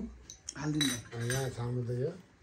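A man speaking in short phrases, with a sharp click about half a second in and light clinks from handling a padded instrument case and its strap.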